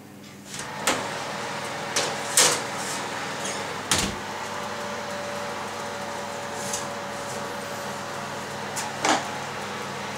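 A built-in oven door is opened, a metal tart tin is set on the oven shelf and the door is shut. There are a handful of knocks and clanks, the loudest a heavy thud about four seconds in, over a steady whirr.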